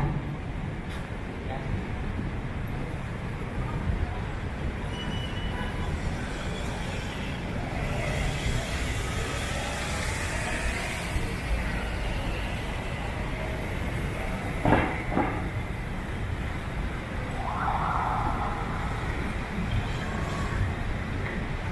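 City street ambience: a steady wash of traffic noise with vehicles passing, and indistinct voices of passers-by. A brief sharp knock stands out about fifteen seconds in.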